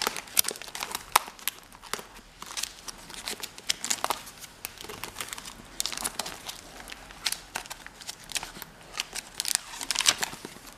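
Clear plastic sleeve pages of a ring-binder postcard album being turned by hand, crinkling in a continuous run of irregular, quick rustles and light clicks.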